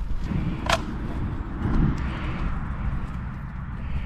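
Wind rumbling on the microphone in an open field, with a single sharp click about two-thirds of a second in.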